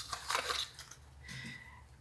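A small cardboard box being opened by hand and a bottle slid out of it: short scraping, crinkling rustles, loudest in the first half second, with a quieter scrape about a second and a half in.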